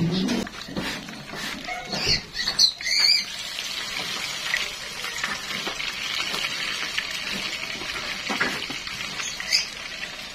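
Hot oil sizzling steadily around a squash-and-shrimp fritter (okoy) shallow-frying in a pan. A few short, sharp clicks and squeaks come about two to three seconds in.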